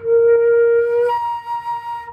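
Flute playing a loud held note that, about a second in, jumps up an octave with the fingering unchanged: overblowing, where a faster airstream alone makes the flute sound its next harmonic.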